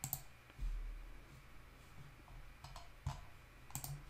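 A few faint computer mouse clicks: one at the start, then several close together in the last second and a half, with a soft low thump about half a second in.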